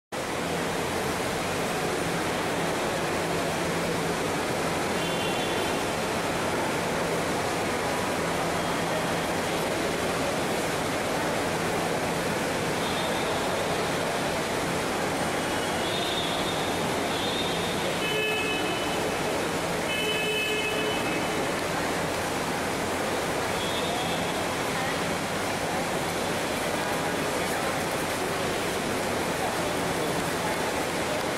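A steady, even hiss of terminal and crowd ambience with indistinct voices, broken by a few short, faint high tones.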